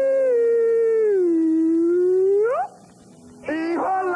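A young man's voice holding one long, drawn-out sung note in a comic chant. The note slides down in pitch, then sweeps sharply upward and breaks off a little past halfway. After a short pause, choppy singing starts again near the end.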